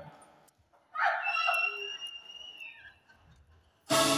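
A lull in a live concert hall. About a second in, a high, steady call comes from the audience and is held for over a second. The band's organ comes in right at the end.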